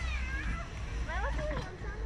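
Riders' high-pitched squeals, short cries rising and falling in pitch, once at the start and again about a second in, over a low wind rumble on the microphone.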